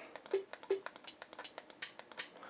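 A quiet hi-hat pattern from a beat in progress, crisp ticks at about four a second, with a couple of faint lower blips.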